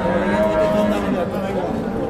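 Cattle mooing: one long, steady, low call that ends about a second in, over the background chatter of a crowd.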